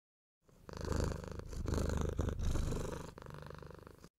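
A cat purring, rising and falling with each breath over about four breaths, and growing fainter near the end.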